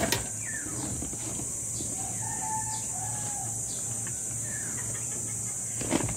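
Handfuls of damp decomposed leaves and soil dropped into a plastic bin, giving a few dull knocks at the start and another one near the end. Chickens cluck in the background over a steady high hiss.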